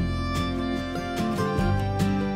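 Instrumental background music with guitar and fiddle in a country style, notes changing every fraction of a second.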